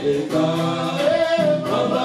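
Several men singing together into microphones, with a live band of electric guitar and drums accompanying them.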